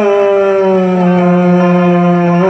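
A man singing one long held note into a PA microphone, the pitch sliding gently down partway through, in a Hindi film song.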